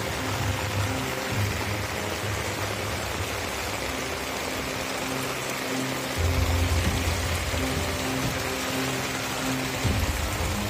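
Heavy rain pouring, with water running over the ground, under a background music bed of sustained low notes and bass.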